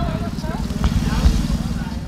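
A steady low rumble with short, indistinct voice fragments over it.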